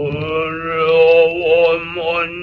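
Solo male noh chanting (utai) in the Hōshō style, heard from an early-1930s gramophone record. A single long syllable begins with a short upward scoop and is held with a slow, wavering vibrato.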